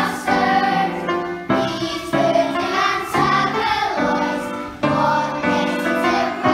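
A group of young children singing together as a choir, in phrases with short breaks between them.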